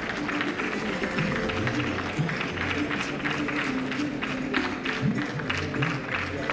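Background music playing over steady audience applause.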